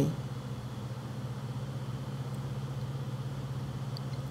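A steady low hum with a fine, rapid, even pulse to it.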